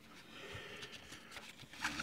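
Pages of a printed paper manual being handled and turned: a soft rustle, with a few light ticks near the end.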